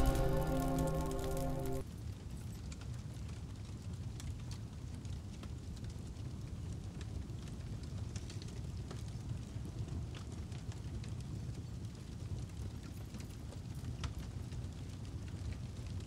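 A held music chord fading and stopping about two seconds in, followed by a low, steady fire sound effect with scattered small crackles.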